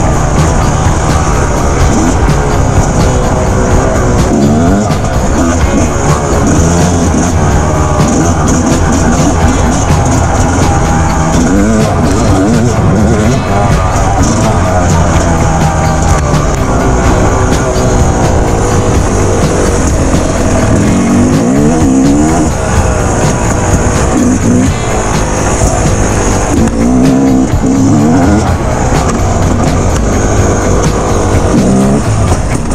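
Dirt bike engine under way, its pitch rising and falling again and again as the throttle is worked, mixed with loud background music.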